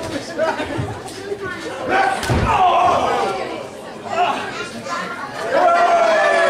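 One heavy thud from the wrestling ring about two seconds in, over a seated crowd's chatter, with voices rising in shouts right after the impact and again near the end.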